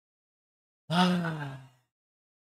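A man's breathy, voiced sigh about a second in, falling in pitch and fading out after just under a second; silence before it.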